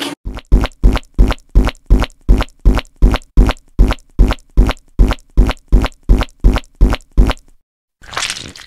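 A short, punchy editing sound effect repeated about twenty times, evenly at about three a second, each hit marking another comment box popping onto the screen; it stops shortly before the end.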